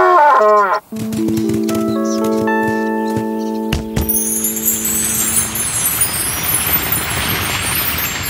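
A cartoon elephant's trumpeting call that swoops up and down in the first second, then a run of ringing chime notes that hold and overlap. From about four seconds in, a bright hissing, sparkling shimmer: a magic sound effect.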